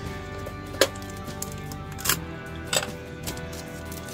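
Soft background music with four short, sharp crinkles and clicks spread through it, from a paper guitar-string packet being handled and opened.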